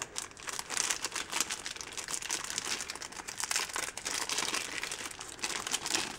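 Clear plastic toothbrush wrapper crinkling and crackling as it is handled and pulled open by hand, a continuous stream of small crinkles.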